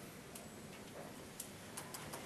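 Quiet room tone in a classroom: a steady low hiss with a few faint, scattered clicks.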